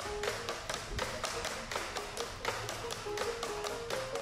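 Tinikling bamboo poles knocked on a tile floor and clapped together in a quick, steady rhythm, with music playing under it.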